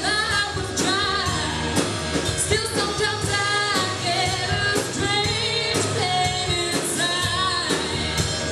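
A live rock band playing: a woman singing lead over electric guitar, bass guitar and a drum kit, with regular drum hits under the sung lines.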